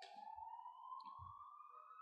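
Near silence, with only a faint thin tone rising slowly in pitch.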